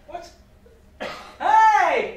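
A person's loud wordless vocal cry, its pitch rising and then falling, after a short breathy burst about a second in.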